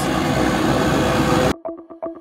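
Loud, steady outdoor noise with no distinct source. About a second and a half in it cuts off abruptly, and background music with a quick, even beat of short notes takes over.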